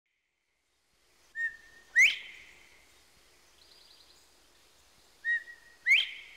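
Northern bobwhite calling twice, about four seconds apart: each call is a short whistled note followed by a loud, sharply rising whistle, the 'bob-white'. A faint chirp from another bird comes between the calls.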